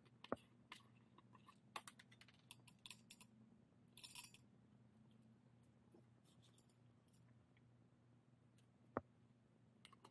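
Faint scattered clicks and small rattles of a few whole coffee beans dropped by hand into a stainless-steel dosing cup, along with the twisting of a bean tube's cap, with a brief burst of rattling about four seconds in and a single sharp click near the end.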